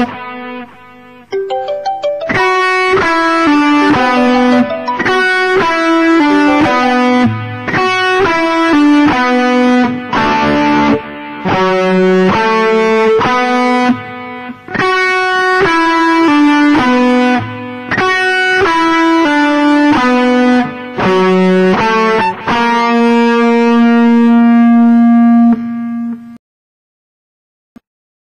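Les Paul-style electric guitar playing a single-note lead solo in short phrases with brief breaks, ending on a long held note that stops right at the end.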